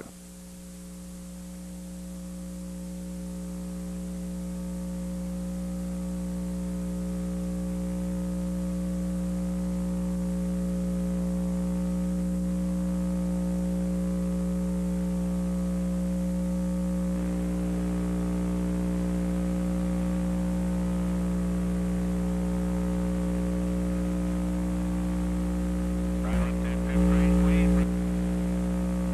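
Steady electrical mains hum with a buzzy edge in the audio feed, swelling gradually over the first ten seconds and then holding level. A brief click and a short louder patch of the hum come near the end.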